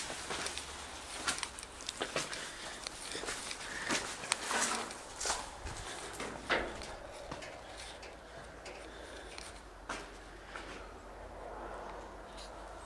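Footsteps and brush rustling as someone pushes through dense overgrown bushes, with scattered sharp cracks; the sounds are busiest in the first half and thin out to quieter steps after about seven seconds.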